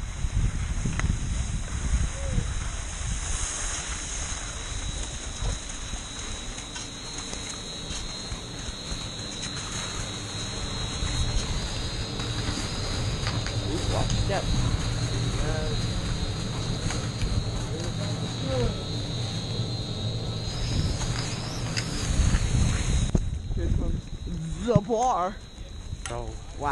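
Skis sliding and scraping on snow with wind rumbling on a helmet-mounted camera's microphone, and faint voices in the background. The noise drops away sharply near the end as the chairlift carries the skier off the ground.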